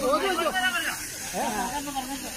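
A person's voice, in two bursts with a short gap about a second in, over a steady hiss.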